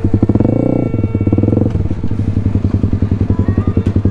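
Single-cylinder dirt bike engine running at low revs with a rapid, even chugging beat. It is uneven for the first couple of seconds, then settles into a steady idle.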